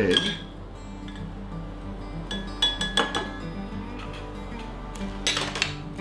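Metal tongs clinking and scraping against a glass jar as a pickled egg is fished out of the brine, with a cluster of clinks about halfway through and another knock near the end, over soft background music.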